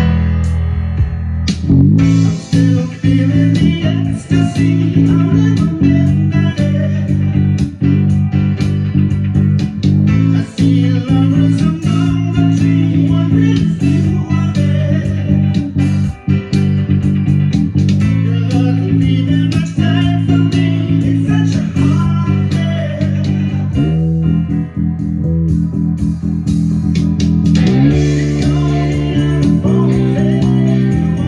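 Electric bass, a modified Gibson EB-4L with a split mudbucker pickup, playing a busy line over a rock band recording with drums. The band comes in fuller about two seconds in.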